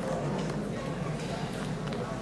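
Indistinct murmur of voices in a large, reverberant hall, with a few faint clicks or taps.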